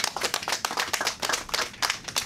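Audience applauding: a dense, uneven run of hand claps at the end of a speech.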